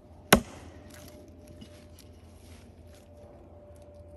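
An axe chopping once into a log: a single sharp strike about a third of a second in, followed by faint scattered clicks.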